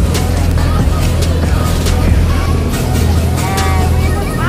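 Steady low drone of a passenger ferry's engines, under background music with a beat.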